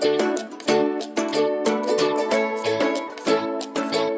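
Music: the instrumental intro of a pop song, led by a ukulele strumming chords in a quick, steady rhythm, with no singing yet.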